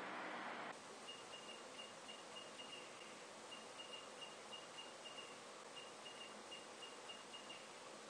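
Small piezo buzzer running off a homemade battery of liquid-filled cups with screw and copper-wire electrodes. It gives faint, high, short beeps about four a second, in three runs with short pauses. There is a soft hiss at the very start.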